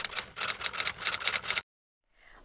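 Typewriter key-click sound effect: a rapid run of clicks, about ten a second, that goes with text typing itself out on screen, cutting off suddenly after about a second and a half.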